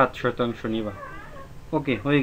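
A man speaking in a narrating voice, with a short quieter stretch about a second in.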